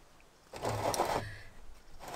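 Hands crumbling and pressing loose potting soil into a flower pot: a soft, grainy crackling that starts about half a second in and runs to near the end.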